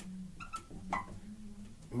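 Dry-erase marker squeaking against a whiteboard in short strokes, about half a second and a second in, over a faint steady low hum.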